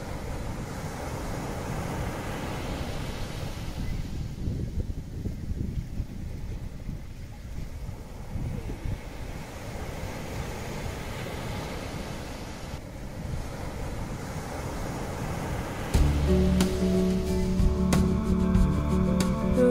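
Ocean surf washing onto a beach, a steady rushing with some wind on the microphone. About two seconds before the end, guitar music comes in louder over it.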